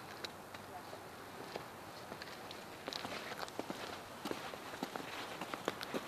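Footsteps on a concrete sidewalk, light scattered steps starting about three seconds in and coming more often toward the end, over a steady faint hiss.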